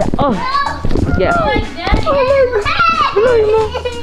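Children's high-pitched voices shouting and calling out while playing, with a few short knocks from the camera being handled.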